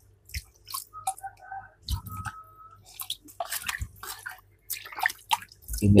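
Irregular small clicks, rustles and drips of water as containers of water are handled over a plastic culture tub, with a short thin tone about two seconds in.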